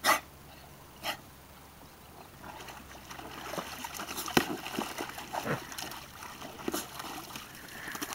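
English bulldog in a plastic paddling pool: two short snorts about a second apart, then water splashing and sloshing irregularly as the dog moves about in the pool from about two and a half seconds in, loudest a little after four seconds.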